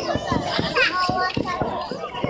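Crowd chatter, with several children talking and calling out at once.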